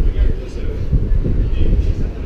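Wind buffeting the microphone: a loud, gusty low rumble that swells and dips unevenly.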